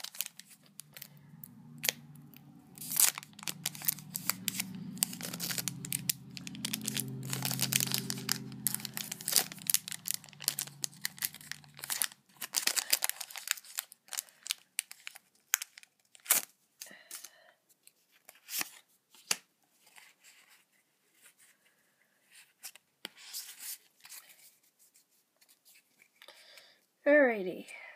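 Foil Pokémon booster pack wrapper crinkling and tearing open, with dense sharp crackles through the first half. These thin out to scattered clicks as the cards inside are handled.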